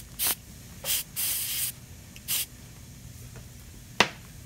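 Dental air-water syringe blowing short puffs of air to clear excess amalgam from a freshly packed filling: four hissing bursts in the first two and a half seconds, the longest about half a second.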